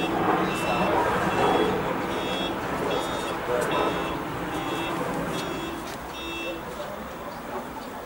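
A vehicle's reversing alarm beeping, a short high tone a little more than once a second, stopping about six and a half seconds in.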